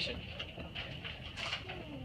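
A bird calling faintly over a quiet background.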